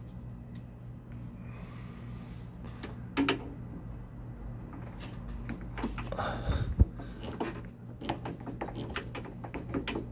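Light clicks and knocks of a screwdriver and metal door-frame parts being handled, with one louder knock about three seconds in and a cluster of clicks near seven seconds as the screwdriver bit is set into a screw. A steady low hum runs underneath.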